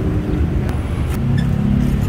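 Steady low rumble of a running motor vehicle's engine close by, with a few short knocks of a wooden pestle in a clay mortar.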